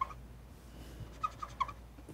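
Dry-erase marker squeaking on a whiteboard in short, high chirps: a few right at the start and three or four more about a second and a half in.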